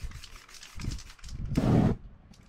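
Short hisses from an aerosol spray-paint can, then about one and a half seconds in a louder, half-second whoosh of flame as the paint on the canvas flares up.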